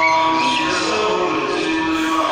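A man's solo voice chanting religious recitation through a microphone, in long, held melodic phrases.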